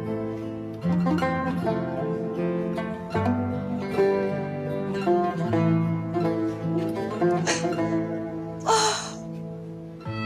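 Background music: a gentle instrumental with plucked strings, its notes changing every second or so. There is a brief noisy sound near the end.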